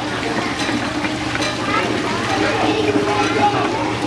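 Indistinct chatter of children and adults, with water splashing in a play trough and a few light knocks of plastic pieces being moved.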